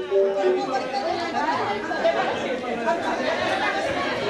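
Crowd chatter in a large hall, many voices talking at once, with the tail of a song ending within the first half second.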